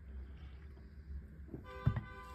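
Noise from loud people outside: a short, steady pitched tone with a thump at the same moment, about a second and a half in, over a low steady hum.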